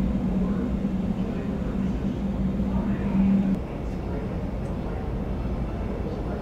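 Airport apron noise: a steady low rumble of aircraft and ramp equipment, with a droning hum that cuts off suddenly a little past halfway.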